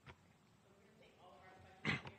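Faint, distant voices of reporters calling out off-microphone, with a short loud sound near the end.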